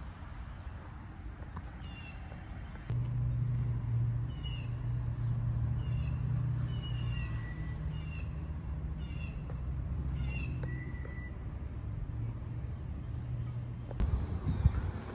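An animal calling over and over: short high calls, each falling sharply in pitch, roughly one a second. A low steady hum runs underneath from about three seconds in.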